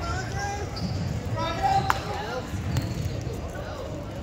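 People's voices calling out in a large echoing gym, over repeated dull low thumps, with one sharp click about halfway through.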